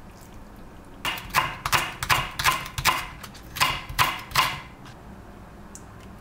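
Chef's knife slicing through crisp green onion onto a wooden cutting board. About ten quick cuts in two runs, with a short pause between them; the chopping stops well before the end.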